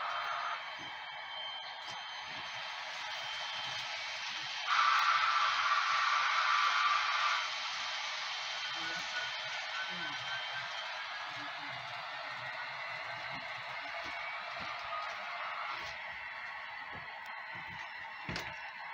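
HO-scale model freight train of coal hoppers rolling along the layout track, a steady hiss of wheels on rails, louder for about three seconds from about five seconds in.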